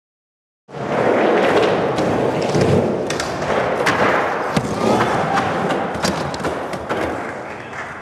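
Skateboard rolling fast on a smooth ramp surface, its metal trucks grinding along a ledge edge in a 50-50, with several sharp knocks as the wheels come down and strike.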